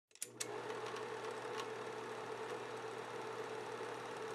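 Film projector sound effect: a steady mechanical whir and hum, with a few sharp clicks in the first second and a half.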